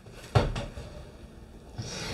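A single soft thump about a third of a second in, followed by faint rustling as a book is reached for and handled.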